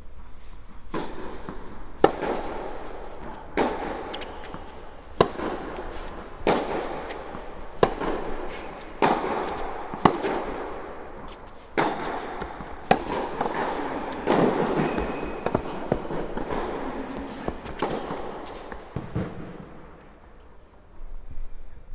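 Tennis rally: a ball struck back and forth by rackets, with sharp hits and bounces about every second or so, each echoing around a large indoor tennis hall.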